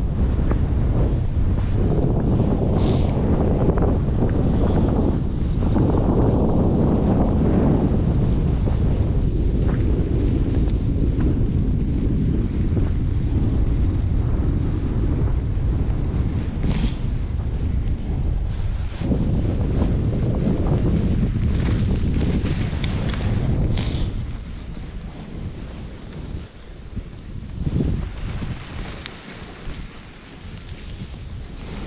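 Wind rushing over a body-worn camera's microphone during a downhill ski run: a loud, steady buffeting that drops off sharply about six seconds before the end.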